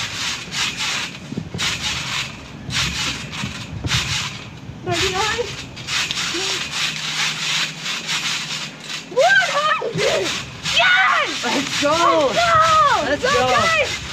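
Trampoline mat and frame rustling and knocking as children bounce and flip on it. In the last five seconds, high children's voices calling out over it, rising and falling in pitch.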